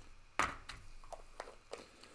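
A sharp click about half a second in, then several lighter clicks and taps: small objects handled on a tabletop, including a small screw-cap jar in gloved hands.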